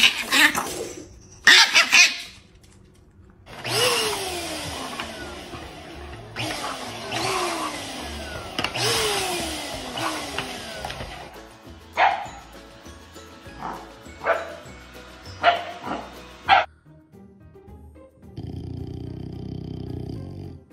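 A dog barking several times, with music alongside.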